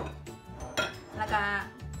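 Glassware being handled on a kitchen counter, with two sharp clinks: one right at the start and one under a second in. A background music bed runs underneath.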